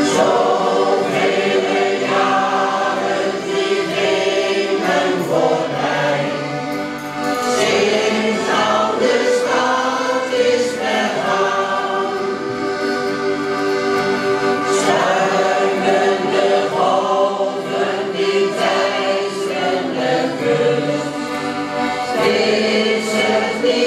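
Mixed shanty choir of men and women singing together, accompanied by several accordions, in a continuous sustained passage.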